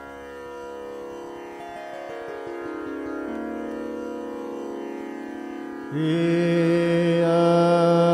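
Hindustani classical music in Raag Bhupali: slow, steadily held notes stepping down one after another with no drum, then a louder sustained note comes in about six seconds in.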